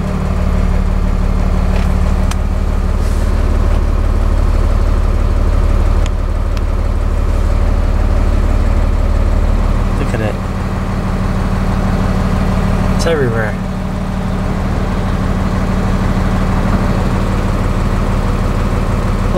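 Diesel engine of a Hino tow truck droning steadily, heard from inside the cab while driving. The deepest part of the engine note drops away about ten seconds in.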